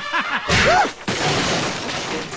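A cartoon sound effect of shattering glass, starting suddenly about half a second in and clattering on for over a second, with a man's laughing voice just before it.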